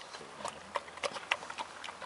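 A brown bear munching grapes and pears: a string of irregular sharp chewing clicks, several a second.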